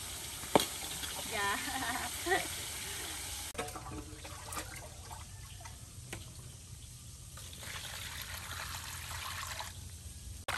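Water scooped with a plastic dipper from a large clay water jar and poured into a plastic basin of leafy greens, with splashing and trickling. Before that, a sharp click and a short spoken phrase.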